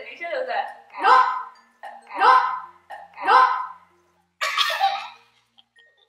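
Young women laughing hard: four loud shrieks of laughter about a second apart, each rising in pitch, then a breathy burst of laughter.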